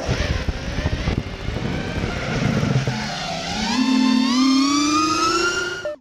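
Outro sound effect on a logo card: a rough rumble, then about halfway in an engine-like whine that rises steadily in pitch, like a motor revving up, and cuts off suddenly at the end.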